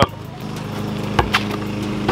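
A basketball bounced on an asphalt court: two sharp knocks in quick succession about a second in.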